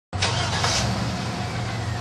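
A steady low mechanical hum over a background of noise.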